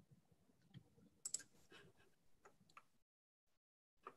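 Near silence on a video-call line, broken by a few faint, short clicks, a close pair of them about a second in. The line goes completely dead for a moment about three seconds in.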